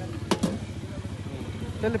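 A steady low motor or engine rumble runs in the background. Two sharp clicks come close together about a third of a second in, and a man's voice starts near the end.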